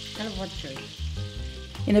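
Stuffed cardoon parcels sizzling steadily in olive oil in a frying pan.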